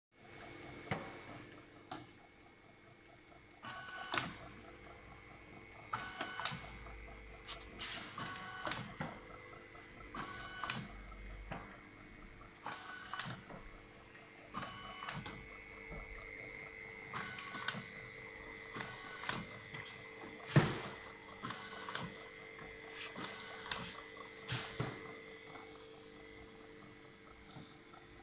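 Wrap labelling machine running: a steady motor and conveyor hum, with a short mechanical click-and-chirp about every two seconds as the machine cycles. One sharper knock, the loudest sound, comes about two-thirds of the way through.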